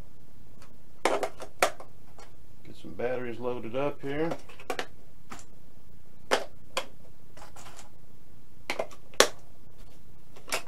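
Sharp plastic clicks and snaps from a Spektrum DX6i radio transmitter being handled while its batteries are changed, about eight clicks spread irregularly through, the loudest near the end. A man's voice murmurs briefly in the middle.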